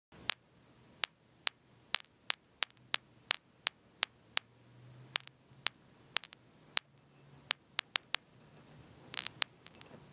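A series of sharp clicks, unevenly spaced at about two a second, over a faint steady low hum.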